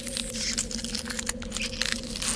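Intro sound effect: a dense crackling full of sharp clicks over a steady low drone.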